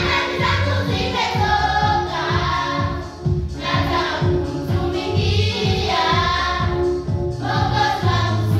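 A children's choir singing a Swahili gospel song together, over accompaniment with a steady low beat.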